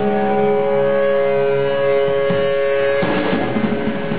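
Distorted electric guitar holding a sustained, ringing chord. About three seconds in it gives way to the full band playing loud heavy music with drums.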